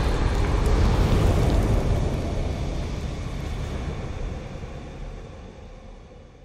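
Deep rumbling sound effect of a fiery logo reveal, the tail of a boom, fading slowly away over several seconds.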